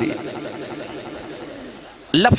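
Echoing tail of a man's voice through a public-address loudspeaker system, fading away steadily over about two seconds.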